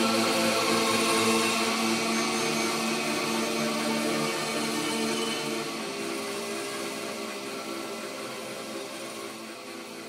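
Electronic dance music in a beatless passage: layered, sustained synth tones with no kick drum, slowly fading down.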